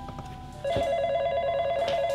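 Desk telephone ringing, an electronic ring with a rapid warble, starting a little over half a second in.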